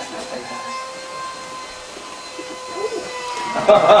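A steady whistle-like tone held for about three seconds, dipping slightly in pitch as it fades, with a voice coming in near the end.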